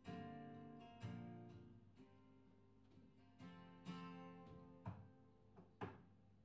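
Acoustic guitar playing a slow picked instrumental passage. Notes and chords are struck about once a second and left to ring, with a few sharper plucks near the end.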